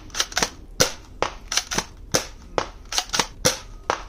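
ZWQ S200 Fire Rat spring-powered foam-ball blaster firing a rapid string of shots: about a dozen sharp snapping cracks, roughly three a second, irregularly spaced.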